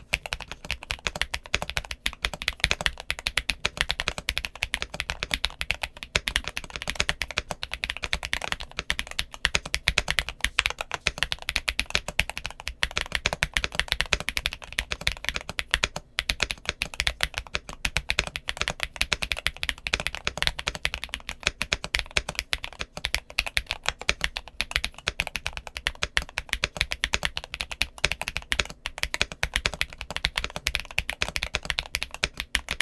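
Steady, fast typing on a GMK67 mechanical keyboard fitted with Milk Princess linear switches (MMD Princess stem and 53 g spring in a Gateron Milky Red housing) and YQ Dolch Cherry keycaps: a dense, unbroken stream of keystrokes.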